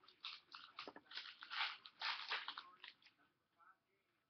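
Trading-card packaging being handled and opened: a quick run of crinkling, crackling and tearing noises that stops about three seconds in.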